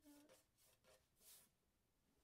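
The tail of a held sung note fades out, then near silence: room tone with a faint breath about a second in.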